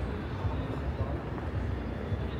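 Outdoor street ambience: a steady low rumble with faint distant voices.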